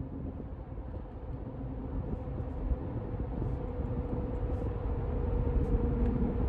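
Steady low rumble of road and engine noise inside a moving car's cabin, with a faint steady hum above it, growing a little louder toward the end.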